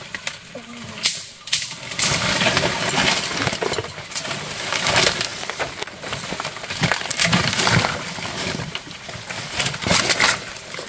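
Leaves, branches and bamboo rustling and crackling as a person climbs through dense undergrowth, with a few sharp cracks of stems about a second in.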